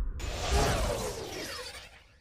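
A sudden sound-effect hit a moment in, with sweeping tones falling in pitch, that fades out over about two seconds and closes the opening-title music.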